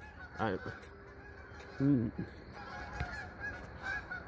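Geese honking: a few short calls, the loudest about two seconds in.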